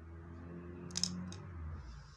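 Scissors cutting a strand of knitting yarn: a sharp snip about a second in, a second click shortly after, over a low hum.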